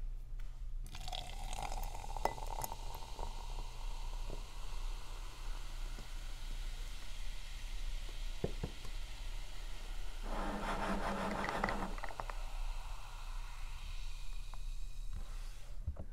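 Canned soda poured over ice into a glass, the pitch rising as the glass fills, then fizzing with small crackles of ice as the foam settles. A louder stretch comes about ten seconds in.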